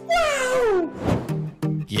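A man's long, high-pitched laughing cry that slides steeply down in pitch, over background music that turns to a steady beat near the end.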